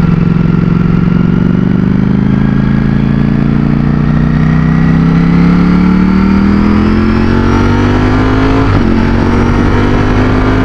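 Ducati Streetfighter V4's V4 engine pulling under steady acceleration, its pitch rising slowly, then dropping sharply about nine seconds in at an upshift before climbing again.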